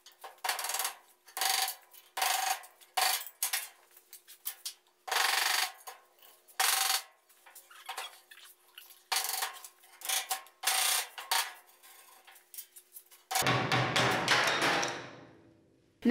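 A hand tool scraping and knocking against wooden boards in a series of irregular short strokes, some sharp clicks and some half-second scrapes, with a longer scrape that fades away near the end.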